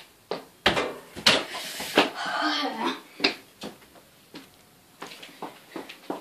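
A mini football kicked, hitting hard a few times in the first two seconds, then lighter knocks as it bounces to a stop. A voice cries out briefly after the hits.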